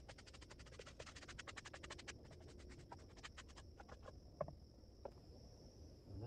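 A stiff hand brush scrubbing sawdust off a wooden carving block in quick, faint scratchy strokes. The strokes are rapid for about two seconds, then slow and thin out, and a couple of light taps follow.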